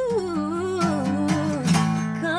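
A woman's wordless vocal run, sliding down in pitch with a wavering vibrato, over plucked acoustic guitar.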